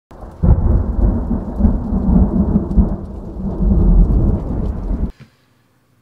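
Title-card sound effect: a loud, rumbling, thunder-like noise that swells in about half a second in and cuts off abruptly after about five seconds.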